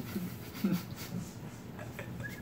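A faint, muffled human voice mumbling a few short sounds, said through a mouthful of food while chewing a chicken nugget.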